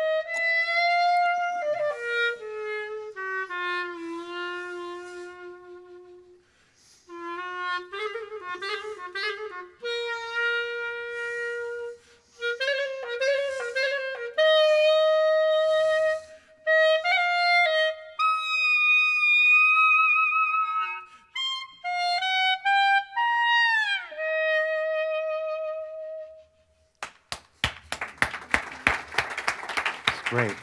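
Solo clarinet played live: a slow melodic line of held and slurred notes with quick wavering trills, and a sharp falling glissando about three-quarters of the way through. The piece ends a few seconds before the close, and audience applause follows.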